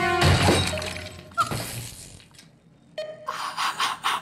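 A loud crash of a computer terminal being smashed, with glass shattering, just after the start, over dramatic music that fades out within the first second or so.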